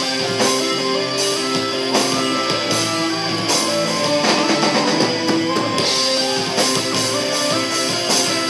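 Live rock band playing an instrumental passage without vocals: electric guitars and bass over a drum kit, with drum and cymbal hits landing at an even beat.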